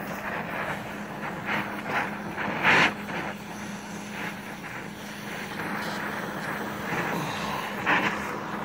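Gas torch flame hissing steadily while it heats steel bar to wrap into a barb, over a steady low hum. A few short louder bursts stand out, the loudest about three seconds in.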